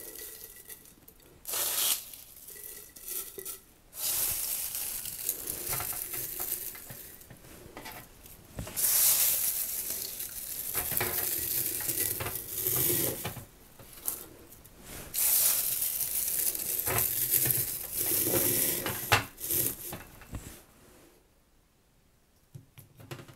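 Dry, crumbly guelder-rose flowers rustling and crackling as they are scooped by hand off parchment-lined baking trays into a glass jar and pressed down, in several bouts with short pauses between.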